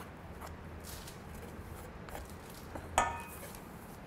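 Soft, faint handling of pie dough being pressed and folded by hand on parchment, with a single bright clink of kitchenware about three seconds in that rings briefly.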